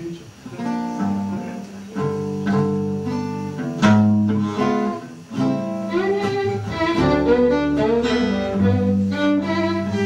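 Live acoustic music: a guitar with a bowed string instrument playing long held notes over it.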